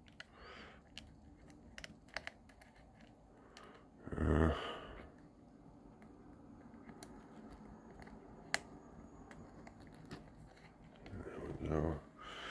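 Small, scattered clicks and ticks of servo wire plug connectors being handled and pushed onto the header pins of a servo driver board, with one sharper click about eight and a half seconds in. A short voice sound comes about four seconds in.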